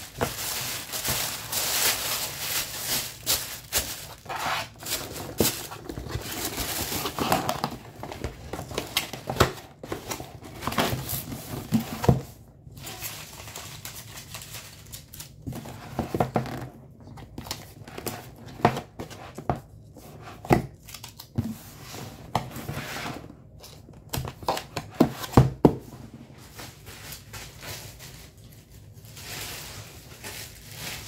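Pink tissue paper crinkling and rustling as it is folded into a shipping box, followed by scattered taps and knocks of a cardboard mailer box being closed and pressed shut.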